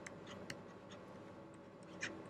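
Faint, irregular light ticks of a stylus tip tapping and touching down on a tablet screen during handwriting, about half a dozen clicks, the clearest about half a second in.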